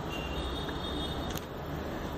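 Steady low rumbling background noise with a faint high tone, and one short click a little past the middle.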